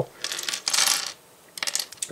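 Small plastic LEGO bricks clattering as a handful is dropped from a hand onto a hard tabletop: about a second of rattling, then a few separate clicks near the end.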